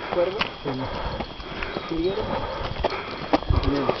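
Footsteps on a dirt road while walking, with a few low thumps, under a man's halting voice.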